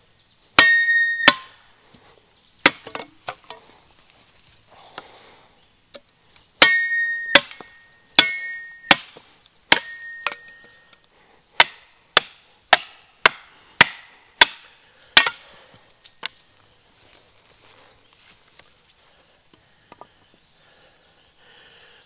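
A wooden baton striking the top edge of a Cold Steel Special Forces shovel's steel blade to drive it into dry, seasoned hardwood: a run of sharp knocks in bursts, several leaving a brief ringing tone from the steel. The strikes stop about fifteen seconds in.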